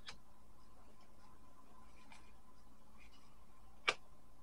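Tarot cards handled on a tabletop: a soft click at the start, a faint one about halfway through, and a sharp tap just before the end, over a faint steady hum.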